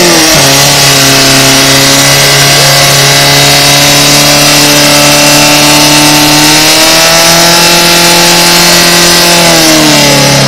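Portable fire pump engine running close by at full throttle, steady high revs with the pitch creeping slowly upward. It is driving water through the attack hoses to the nozzles. The revs drop in the last half second.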